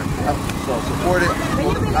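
A man's voice speaking a few short words over a steady low outdoor background rumble.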